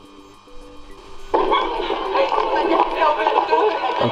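Soundtrack of an old VHS home-video tape starting to play back during capture. A faint steady hum gives way about a second in to a sudden, busy mix of voices and music from the tape.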